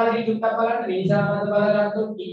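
A voice held out in long, sing-song tones like a chant, in three sustained stretches that break at about half a second and one second in.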